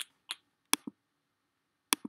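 A handful of short, sharp computer mouse clicks, about five in all, the loudest about three quarters of a second in and the last near the end.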